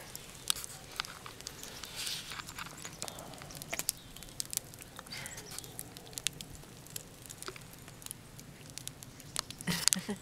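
Faint, irregular crackles and small pops from a campfire of burning logs that has burned down mostly to glowing coals.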